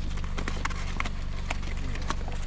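Cardboard pigeon shipping boxes knocking and scraping against a car's back seat as they are moved, a string of short irregular clicks and knocks, over a steady low hum.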